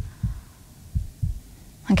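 Heartbeat sound effect: soft, low double thumps, the pairs close to a second apart.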